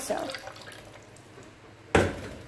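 Thin stream of lemon juice trickling and dripping into a plastic pitcher, fading out within about half a second. A single sharp knock just before the end.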